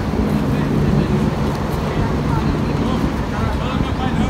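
Steady low rumble of outdoor background noise, with faint voices near the end.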